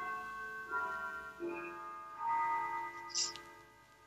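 Faint, sustained bell-like tones at several pitches, entering one after another and overlapping, then dying away about three and a half seconds in. A brief hiss sounds just before they stop.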